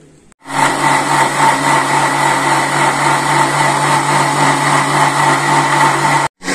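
Electric countertop blender running steadily at full speed, blending date juice. The motor starts about half a second in.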